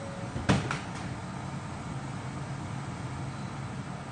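A sharp knock about half a second in, followed by a lighter click, then a steady low background hum.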